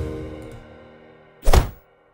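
Background music holding a chord that fades away, then a single loud thud about one and a half seconds in, after which the sound cuts to silence.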